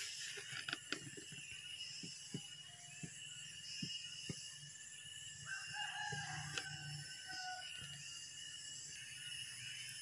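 A rooster crowing once, faint, for about two seconds a little past the middle, over a steady faint high hiss and a few soft clicks in the first half.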